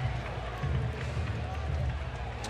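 Ballpark crowd ambience: a low, steady murmur from the stands with no distinct event.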